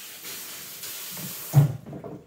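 Barber's shampoo-sink hand shower spraying water through hair, a steady hiss that stops suddenly about one and a half seconds in, with a low thump as the water is shut off at the sink's tap valve.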